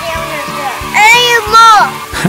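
A child's voice speaking over background music with a steady, repeating bass line; the voice is loudest in the second half.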